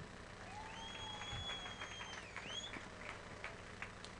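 Faint clapping from several people, with one long, high, steady note held over it for about a second and a half.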